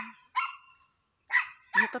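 A dog giving two short, high-pitched barks about a second apart.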